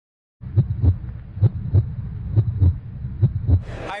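Heartbeat sound in a steady lub-dub rhythm: four double beats, about one a second, over a low hum, starting about half a second in.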